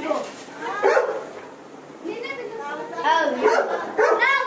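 High-pitched children's voices calling and chattering, with a short lull about a second and a half in.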